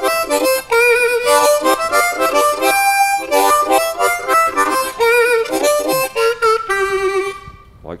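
C diatonic harmonica played in second position: a blues riff of short rhythmic chords and single notes, with tongue-blocked chord stabs and bent notes. The playing stops shortly before the end.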